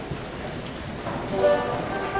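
Low murmur of a hall, then about a second in a band instrument sounds a steady held note.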